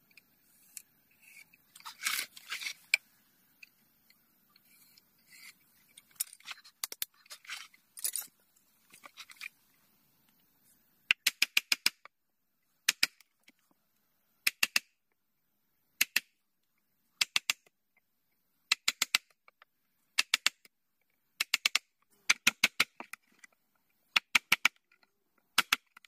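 Wooden mallet striking a steel chisel into a thick wooden disc: sharp knocks in quick groups of three to five blows, a group every second or two, starting about ten seconds in. Before that, light scraping and rustling as the wood is marked out and handled.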